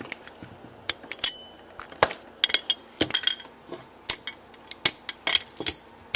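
Irregular metallic clicks and clinks of a screwdriver working on an Edwards 270-SPO manual fire alarm pull station, resetting it after it was pulled.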